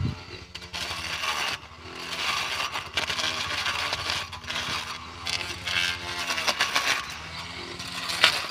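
Small electric motor of a cable-powered pole grass cutter running steadily, with bursts of rasping as its spinning blade cuts through weeds and small plants at ground level; the motor's pitch dips briefly at times as the blade takes the load.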